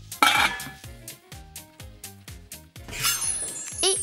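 Upbeat background music with a steady beat. About a quarter second in comes a loud bright metallic clink that rings on, from a metal dome cover on a steel serving platter. Near the end there is a falling swoosh and then a wobbly, wavering tone.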